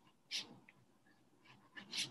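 Faint sound of a wax crayon being rubbed lightly across paper, with one short hiss about a third of a second in.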